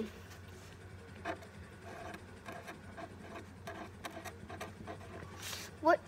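Felt-tip marker drawing on paper: faint, irregular short scratching strokes.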